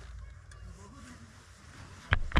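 Faint low rumble of a handheld camera being picked up and moved, with a brief faint voice murmur about a second in.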